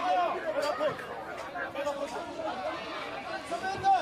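Several people talking over one another in a crowd: indistinct chatter with no other distinct sound.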